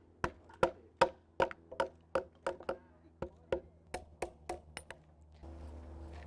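Hammer blows, about three a second, knocking the waste wood out of a rail cutout in a timber fence post. The blows stop near the end.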